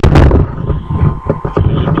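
Microphone handling noise: a sharp thump right at the start, then low rumbling with scattered knocks.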